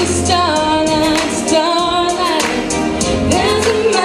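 A girl singing a pop song into a handheld microphone over amplified backing music with a steady beat.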